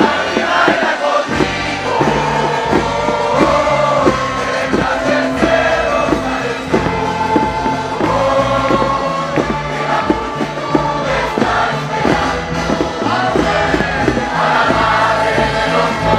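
Many voices singing together over music with a steady beat and bass line, with crowd noise mixed in.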